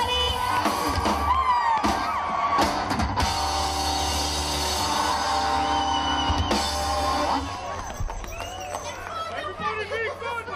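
Live band with a female singer, electric guitar and drum kit playing a song out to its final held chord, which stops about seven seconds in; crowd noise and voices follow.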